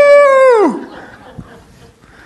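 A man's long, high wailing cry of "nooo", held on one pitch, then sliding down and dying away within the first second, followed by a quiet pause.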